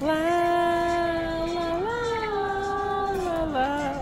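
A single voice singing one long, steady, drawn-out note, stepping up in pitch about two seconds in and dropping lower near the end.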